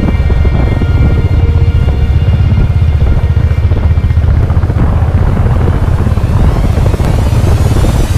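Loud, steady low rumble of a motorcycle on the move, with engine and wind buffeting on the camera microphone, under background music.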